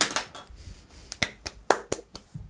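Scattered hand claps from a few people in an online meeting, heard over the call audio: about eight or nine sharp, irregular claps, bunched more closely in the second half.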